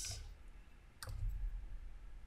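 A single sharp click about a second in, against faint room tone.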